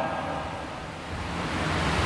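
Steady background room tone between sentences: an even hiss with a low rumble, growing slightly louder toward the end.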